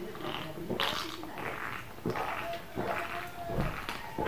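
A man gulping and swallowing a soft drink from an aluminium can, several soft separate gulps in a row.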